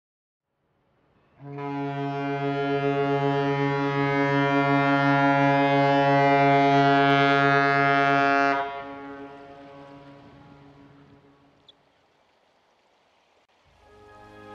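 A ship's horn sounding one long, deep blast of about seven seconds, with a slight beating pulse in its tone. It cuts off and dies away in a fading echo, and music starts near the end.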